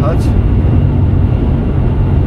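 Steady low rumble of road and engine noise inside a car's cabin while driving at motorway speed.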